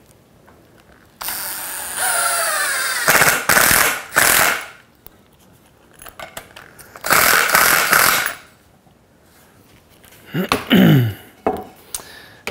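Cordless drill driving screws down through a wooden top rail into the sawhorse legs. There are two main runs: the first has a rising motor whine and ends in a few short bursts, and the second is shorter. A brief burst follows near the end.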